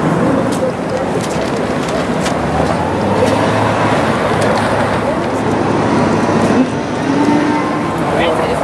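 City street traffic noise with indistinct voices of passers-by. A low steady hum comes in a few seconds in.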